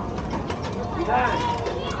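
Indistinct voices in a busy shop, with a few light clicks and clatter from the counter.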